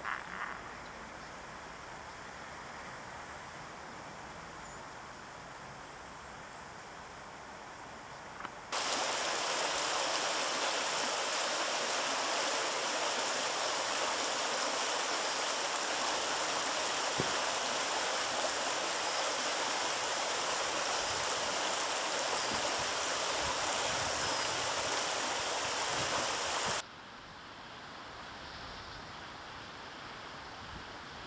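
Shallow stream running over stones: a steady rush of water that starts suddenly about nine seconds in and cuts off just as suddenly a few seconds before the end, with quieter outdoor background either side.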